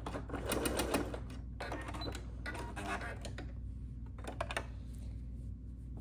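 Electric domestic sewing machine stitching in a few short bursts as the seam end is backstitched, with plush blanket fabric rustling as it is handled between the bursts.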